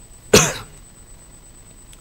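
A man's single short cough, about a third of a second in.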